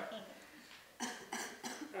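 A person laughing: three short, breathy bursts in quick succession, starting about a second in.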